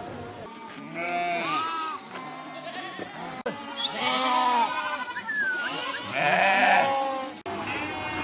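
Mixed flock of sheep and goats bleating, many calls overlapping, loudest near the end.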